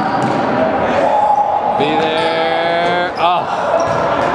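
Basketball game sounds in a gym: a ball bouncing, voices of players and spectators, and sneakers squeaking on the hardwood floor. About halfway in, a single held call sounds for about a second, falling slightly in pitch, followed by a quick run of sneaker squeaks.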